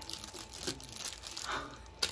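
Clear plastic wrapping crinkling and rustling in irregular bursts as it is handled around a cauldron candle.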